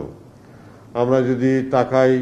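Only speech: a man talking into a microphone, resuming about a second in after a short pause, in a level, drawn-out tone.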